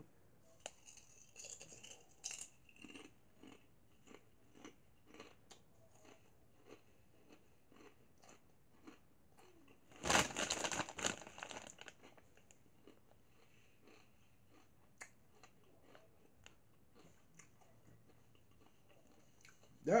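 A person chewing kettle-cooked potato chips: a steady run of small, quick crunches. About halfway through, the plastic chip bag rustles loudly for a couple of seconds as it is moved.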